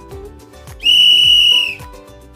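Background music with a steady beat. About a second in, a loud, high whistle tone holds for just under a second and dips slightly in pitch as it ends.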